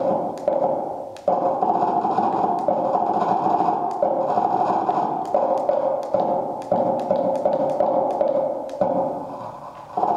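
Computer-generated sound from a laser-driven installation: a dense run of taps and scraping texture, stepping between a few mid-pitched tones. It is produced in real time from the laser dot's movement across the wall. It drops out briefly about a second in and fades near the end.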